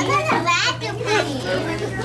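Children's voices talking and calling out over one another in a busy classroom, with a steady low hum underneath.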